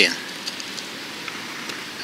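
Steady outdoor background hiss in a pause between voices, with no distinct event.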